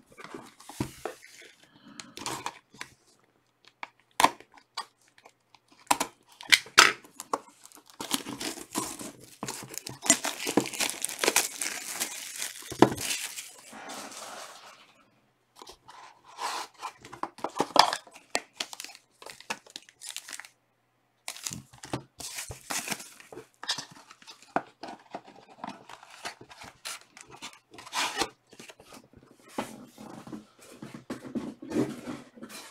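Trading-card box packaging being torn open and handled: crinkling plastic wrap and tearing with many short clicks and scrapes. A longer, denser stretch of tearing comes a third of the way in, with a brief pause about two-thirds through.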